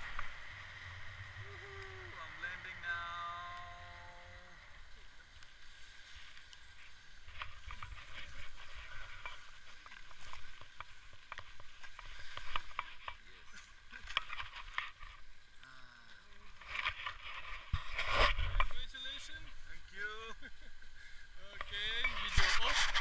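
Wind rushing over the camera as a tandem paraglider comes in low over gravel. From about a third of the way in come repeated irregular scuffs and scrapes of feet and harness on gravel and rustling of gear as the pair touch down and move about, loudest near the end, with brief snatches of voice.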